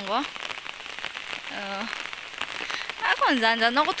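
Steady rain falling on foliage, paths and roofs, a continuous hiss. A voice comes in briefly at the start, again for a moment in the middle, and louder near the end.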